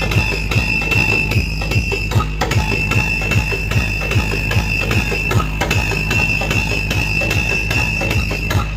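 Loud DJ music blasting from a large truck-mounted sound system, with a rapid bass beat and a steady high-pitched tone held over it.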